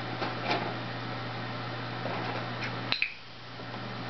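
A dog's paws on a plastic laundry basket as he climbs into it: a few light clicks and knocks, the sharpest one about three seconds in, over a steady low hum.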